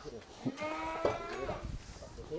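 Peranakan Etawa goat doe bleating while being lifted down by hand: one long, slightly wavering call starting about half a second in and lasting over a second.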